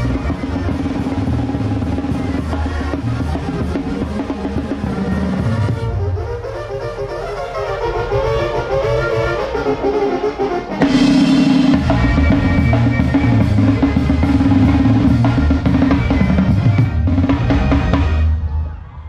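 Live Mexican banda music: a drum kit with snare rolls and bass drum drives tuba and brass. The low end drops out for a few seconds in the middle, then the full band comes back in louder about eleven seconds in, before the piece winds down near the end.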